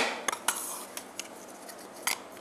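Spatula scraping and tapping inside a stainless-steel mixer-grinder jar while ground nut powder is knocked out into a food processor: a few light clicks, mostly in the first second.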